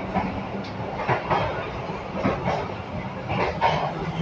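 Running noise of a moving passenger train heard from inside the carriage: a steady rumble of wheels on the rails, with scattered faint knocks.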